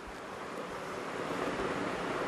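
Steady rushing background noise, an even hiss without any tone or clicks, growing slightly louder over the two seconds.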